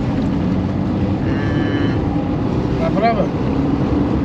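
Steady engine and road rumble inside a moving car's cabin, a taxi in motion. A brief voice sound comes about three seconds in.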